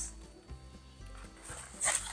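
Soft background music, with a brief rubbing rustle near the end as a rubber 260 modelling balloon is drawn through a hole punched in the cardboard lid.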